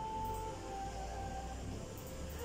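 Music with long held melodic notes that slide between pitches, over a steady low bass.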